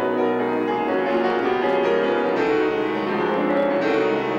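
Solo grand piano playing a classical passage of sustained, overlapping notes, with a fresh chord struck near the end.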